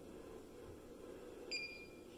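A NAPCO iSecure LCD wireless keypad gives one steady high-pitched beep of about half a second, starting about a second and a half in, as it is being relearned (enrolled) to the iSecure hub and its display wakes up.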